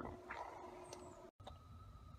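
Faint background noise with a thin steady hum, broken by a brief complete dropout about a second and a third in where the recording is spliced.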